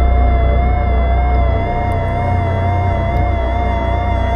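Sustained contemporary chamber music for double-tracked violin, soprano saxophone and EBow guitar: one high note held with a slow, even vibrato over a deep, continuous low drone.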